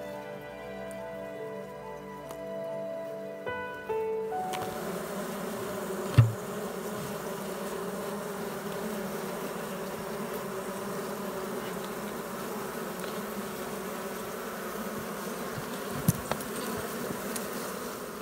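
Background music for about the first four seconds, giving way to a mass of defensive honey bees buzzing around their exposed comb, a steady, dense hum. A single sharp knock sounds about six seconds in.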